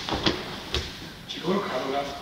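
A judoka's body hitting the judo mat as he is thrown backward by an inner heel trip (uchi-kibisu-gaeshi), a sharp thud of the breakfall near the start, then a smaller knock about half a second later. Voices follow in the second half.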